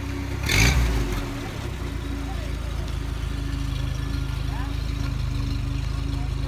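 Engines of slow-moving parade vehicles running steadily at low speed, with a brief loud rush of noise about half a second in. Faint crowd voices underneath.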